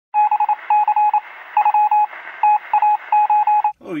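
Electronic beeping of an intro sound effect: a single mid-pitched tone pulsed rapidly in irregular groups of short and longer beeps, thin like sound over a phone line. It cuts off shortly before four seconds in.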